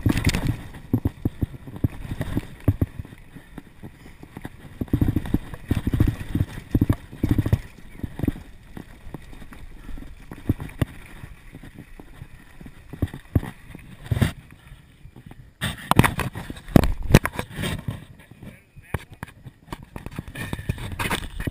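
A mountain bike rolling fast over a bumpy dirt trail, its frame and drivetrain rattling and knocking irregularly, with wind rushing over the camera microphone. The knocking is busiest in the first few seconds and again for the last few.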